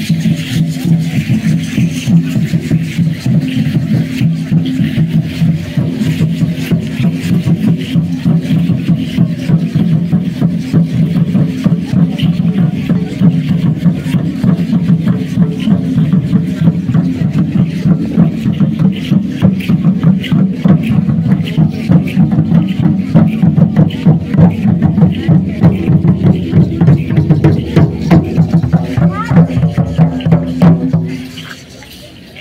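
Several huehuetl, tall upright skin-headed drums, beaten with wooden sticks in a fast, steady, driving rhythm for Mexica (Aztec) ceremonial dance; the strokes grow more pronounced over the last ten seconds or so.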